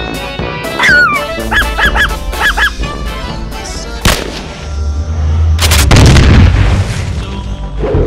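Comic sound effects laid over background music: a falling whistle-like glide, a quick run of short honking squeaks, a sharp crack, then a heavy low boom.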